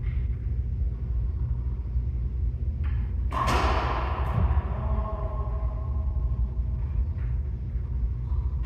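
A racquetball served and struck hard: one loud smack about three seconds in, after a faint tap, ringing and echoing off the court walls for a couple of seconds, over a steady low rumble.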